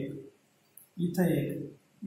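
A teacher's voice speaking in two short stretches, with a pause in between.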